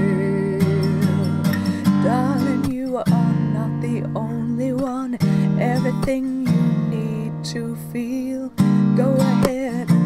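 Acoustic guitar strummed in steady chords, with short breaks at the chord changes every couple of seconds, under a woman's singing.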